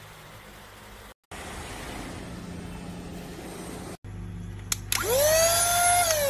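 Cordless handheld vacuum cleaner switched on with a click about five seconds in: its motor spins up in a fast rising whine and then runs at a steady high pitch. Before that, a steady rushing noise.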